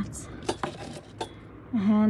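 Gold jewellery clinking as a hand moves through a pile of bangles and rings: a few separate light metallic clicks.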